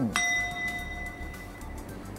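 A single bell-like chime strikes once just after the start and rings on, fading away over about two seconds.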